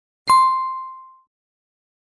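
A single bright bell-like ding sound effect, struck about a quarter second in and ringing out over about a second: the notification chime for a subscribe button being clicked.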